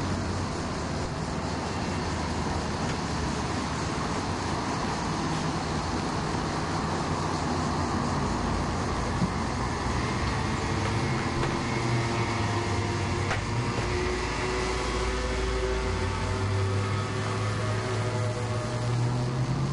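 Road traffic: vehicle engines running steadily, with a low engine hum that grows stronger in the second half.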